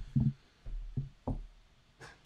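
About five soft, short, low knocks spread over the first second and a half, then near quiet.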